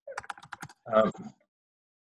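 Computer keyboard typing: a quick run of about six keystrokes in the first half-second, followed about a second in by a brief burst of voice.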